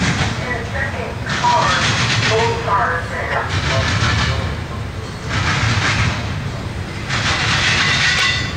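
Double-stack container freight train rolling past, a steady low rumble of wheels on rail that swells and eases every second or two as the cars go by.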